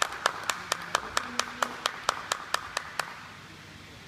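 Hands clapping in a steady rhythm of about four claps a second, fading and stopping about three seconds in.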